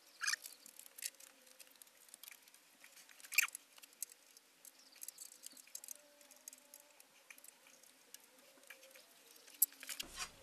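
Faint, scattered clicks and light taps of small tools and metal parts being handled at a mill drill's table. Two sharper clicks stand out, about a quarter second in and about three and a half seconds in.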